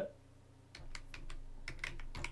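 Typing on a computer keyboard: after a short silence, a quick run of several keystrokes begins under a second in.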